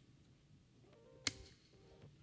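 Quiet room tone with a single sharp click a little over a second in, followed by faint distant voices.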